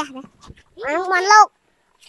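Only speech: a young child's high voice, a short word and then a longer drawn-out one that rises in pitch.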